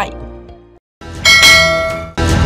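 A bright bell chime sound effect strikes about a second in and rings out with a fading tail, the audio cue for pressing a channel's notification bell icon.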